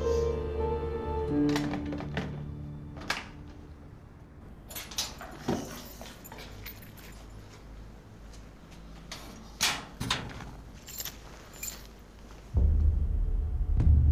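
Drama underscore: held musical tones that fade out over the first few seconds, then a quiet stretch broken by scattered sharp knocks and clicks. A loud, low, dark drone enters near the end.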